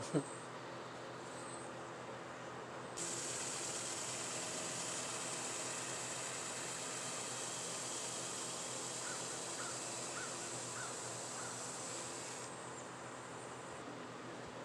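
Cloth rubbing polishing paste onto a black walnut bowl spinning on a wood lathe: a steady hiss that starts about three seconds in and stops shortly before the end, over the lathe's low running noise.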